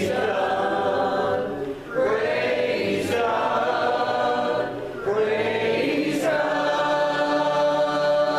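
Small gospel choir singing in long held chords, in phrases that start afresh about two seconds in and again about five seconds in.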